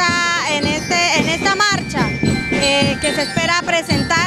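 Marching band playing, with bell lyres ringing out the melody.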